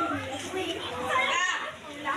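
A crowd of children and women talking and calling out over one another.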